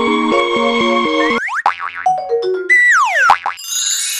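Electronic closing-theme music with a repeating synth pattern cuts off about a second and a half in. It gives way to cartoon-style logo sound effects: quick springy pitch glides up and down, a long falling whistle-like glide, and a bright chiming sparkle near the end.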